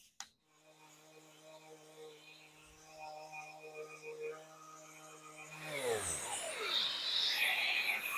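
Random orbital sander with a 220-grit disc running on a coated particle-board cabinet, a steady motor hum. About six seconds in it is switched off and its pitch falls as it winds down, followed by a rough hiss near the end.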